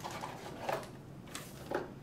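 Packaging being handled: a small cardboard box and a plastic bag rustling and scraping, with a few short rustles spread through.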